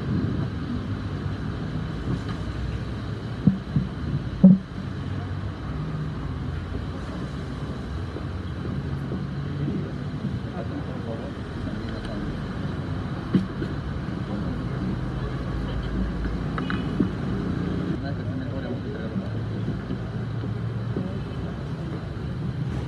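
Ambience of a crowded meeting room: a steady low rumble with faint background murmur, and a few short knocks about three and a half, four and a half and thirteen seconds in.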